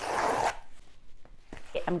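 A paper mailer envelope torn open in one quick rip lasting about half a second, followed by softer paper rustling as it is handled.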